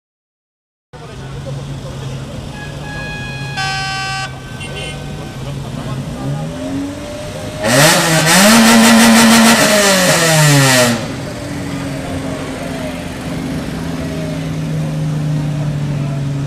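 Engines of classic cars idling in a queue. A short car-horn toot comes near the 4-second mark. Then one car's engine is revved hard, held high for about three seconds and let drop back to idle.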